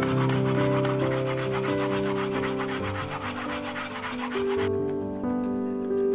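Peeled raw potato being grated on a plastic grater: a fast run of even rasping strokes that stops about three-quarters of the way through.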